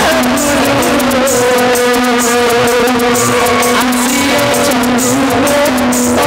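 Devotional Sambalpuri kirtan music: a melody of long held notes, changing in steps, over a steady beat with regular bright metallic percussion hits.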